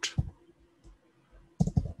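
Keystrokes on a computer keyboard: a couple of sharp clicks at the start, a quiet gap, then a quick run of keystrokes near the end.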